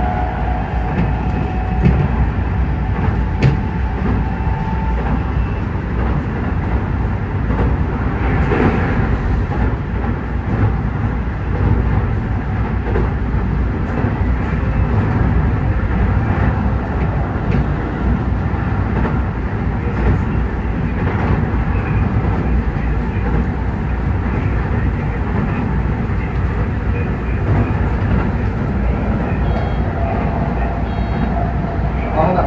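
Electric commuter train running at speed, heard from inside the leading car: a steady rumble of wheels on rail, with a couple of sharp clicks a few seconds in.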